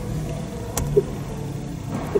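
Steady low hum in the car's cabin, with a single sharp click a little under a second in.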